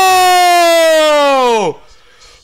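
A person's loud, long held shout at one high pitch that drops away and cuts off near the end, an excited reaction to pulling a red Prizm LaMelo Ball rookie card.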